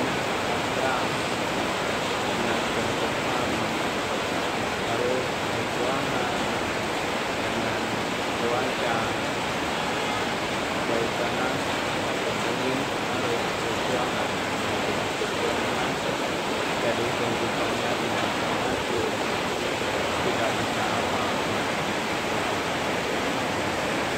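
Heavy rain falling hard: a steady, even hiss of downpour.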